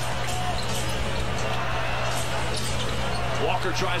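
Basketball being dribbled on a hardwood court over steady arena crowd noise, heard through the game broadcast, with a commentator's voice near the end.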